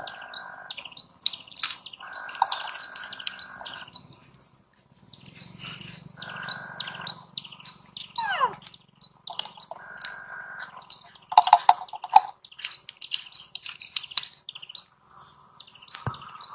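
Birds chirping in many quick, short, high notes throughout, with one louder call sliding down in pitch about halfway through.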